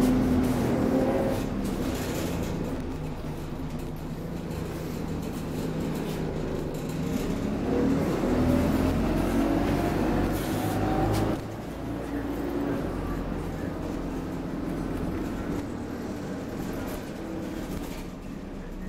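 Dennis Dart SLF single-deck bus heard from inside its passenger saloon, its engine running steadily. From about eight seconds in a whine rises in pitch for some three seconds, then the sound drops away abruptly.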